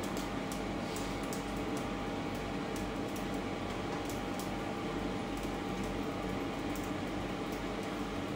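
Steady hum of a kitchen fan over a large stainless steel pot of rice at the boil, with faint light ticks scattered through.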